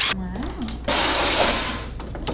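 Ryobi cordless drill whirring for about a second as it drives a screw through a metal hinge into a wooden frame.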